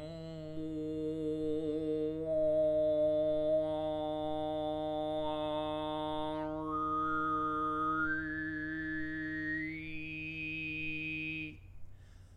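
A man overtone singing: one steady low drone held for about eleven and a half seconds, with a single overtone picked out above it. The overtone stays low at first, then steps upward note by note over the second half before the drone stops.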